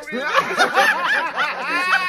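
A person laughing hard in a rapid run of short bursts, about five a second.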